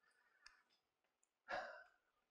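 Near silence, broken about a second and a half in by a short sigh or breath from a man at a microphone, with a faint click a little before it.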